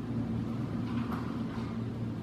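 A steady low background hum, as from a fan or appliance running in the room.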